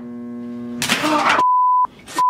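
A steady humming tone breaks off in a sudden loud burst with a gasp. Then a pure, loud censor bleep sounds for about half a second, masking a word.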